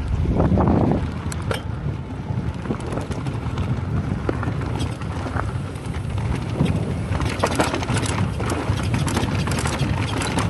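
Mountain bike riding fast down a rough dirt trail, heard through an action camera's built-in microphone. Steady wind noise on the mic and tyre rumble over loose dirt and rock, with frequent clicks and rattles from the bike, and a louder gust in the first second.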